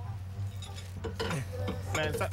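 Light metallic clinking over a steady low hum, with faint voices in the second half.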